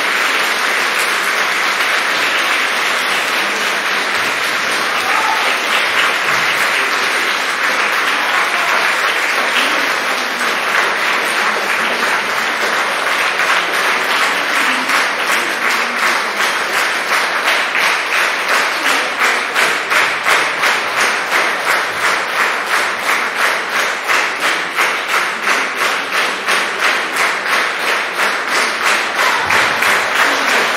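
Concert audience applauding, at first as a dense, even clatter, then about halfway through falling into clapping together in time, about two claps a second.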